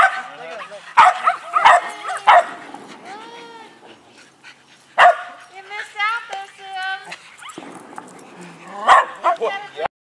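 Shetland sheepdogs barking in sharp bursts, several barks in quick succession about a second in and single barks again around five and nine seconds in. High-pitched whines and yips come between the barks.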